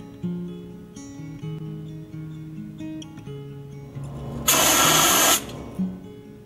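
Background acoustic guitar music, with a fire extinguisher discharging in one loud hiss of about a second, about four and a half seconds in.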